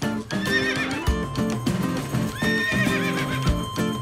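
Horse whinnying twice, a wavering high call each time, over background music.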